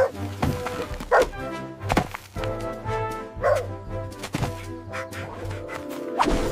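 Background music with several thunks spread through it, cartoon sound effects of a spade digging into a dirt mound.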